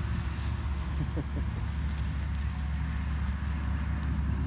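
Steady low rumble of highway traffic.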